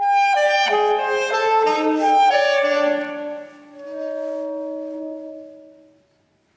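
Two saxophones playing a duet in harmony: a phrase of quick moving notes, then a held two-note chord that swells and fades away near the end.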